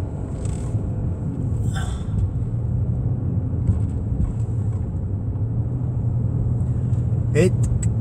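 Steady low rumble of engine and tyre noise from a Cadillac driving along a road, heard from inside its cabin.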